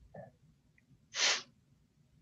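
A single short, sharp burst of breath about a second in, like a sniff, snort or sneeze from a person near a call microphone, after a faint brief sound at the very start.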